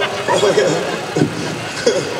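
Indistinct talking and voices from people on the street, over a steady background of city noise.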